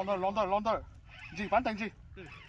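Geese honking: two bursts of wavering, pitched calls, one at the start and one in the second half.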